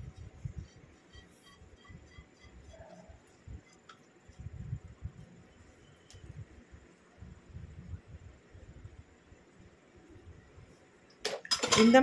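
Thick, wet hair-dye paste being scraped from a metal pot into a bowl with a spoon, heard as soft, irregular low thuds and handling sounds.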